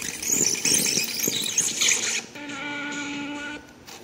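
Cassette deck mechanism giving a loud, scratchy high-pitched squeal for about two seconds as its keys are worked, followed by a steady pitched tone that stops shortly before the end.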